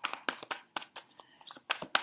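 A deck of tarot cards being handled and shuffled by hand, heard as a run of quick, irregular card flicks and clicks.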